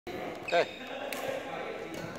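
A man says a short "so", then a single sharp tap about a second in, with a fainter one near the end.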